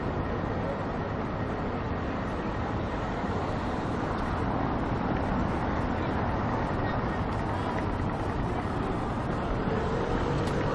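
City street ambience: a steady wash of traffic noise with indistinct voices of people around.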